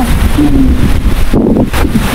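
Wind buffeting the microphone: a loud, steady low rumble with a rushing hiss.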